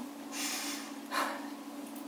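A woman breathing out through her nose and mouth: two short noisy breaths, the first about half a second long near the start and a shorter one a little past the middle, over a faint steady low hum.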